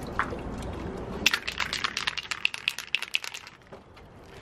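Aerosol can of plastic primer being shaken, its mixing ball rattling in quick clicks, about six a second, starting a little over a second in.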